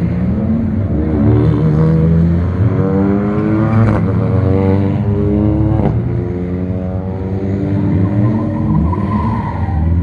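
Ford Fiesta rally car engine accelerating hard out of a hairpin, rising in pitch through the gears. There are two sharp cracks at the upshifts, about four and six seconds in.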